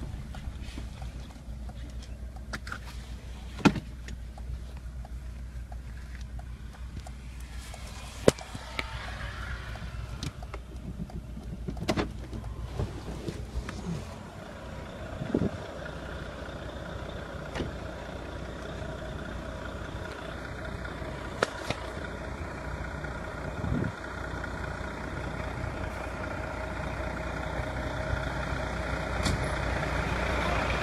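Road vehicle engine idling, a steady low rumble, with a hum that grows louder toward the end. A few sharp knocks sound in the first half.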